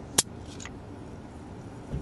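Jolt Cola can's pull-tab snapping open: one sharp crack about a quarter second in, with a faint brief hiss of escaping carbonation just after.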